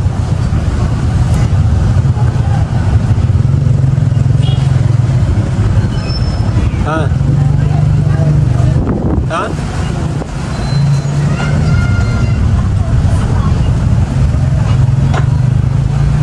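Steady low rumble of a motor vehicle's engine running close by at the roadside, dipping briefly about two-thirds of the way through, with faint voices in the background.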